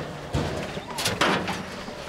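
Gemsbok jostling in a wooden crush: a sharp knock against the walls or board about a third of a second in, then a short hissing burst about a second in.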